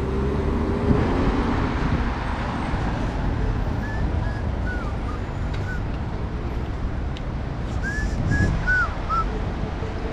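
City street traffic: a steady rumble of passing cars and engines. A few short high chirps come in the middle and again near the end.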